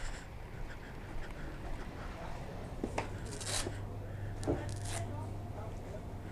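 A few brief rustles and scuffs, then a steady low hum of a shop's refrigeration that sets in about halfway through.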